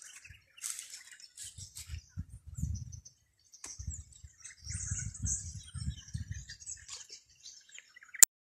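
Small birds chirping, with low rumbles coming and going, loudest about two to three seconds in and again around five to six seconds in.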